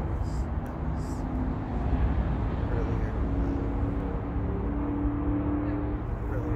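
Steady drone of a distant motor vehicle over low outdoor rumble, with a held hum that drifts slightly in pitch and grows stronger in the second half.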